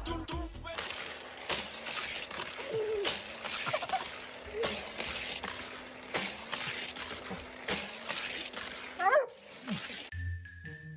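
Motorized booster of a toy race-car loop track running with a faint steady whir, while toy cars rush through it and around the loop in repeated loud whooshes about every second.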